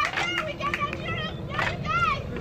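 Wooden dance sticks clacking about twice a second in a Chuukese stick dance, with high-pitched voices calling out over them.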